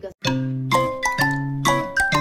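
Background music begins about a quarter second in after a brief silent gap: a chiming, bell-like melody with a new note about every half second.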